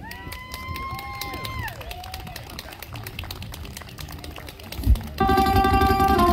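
Audience clapping with a few high, drawn-out cheers of 'woo' over the first two seconds. A thump comes just before five seconds in, then a flamenco guitar starts playing near the end.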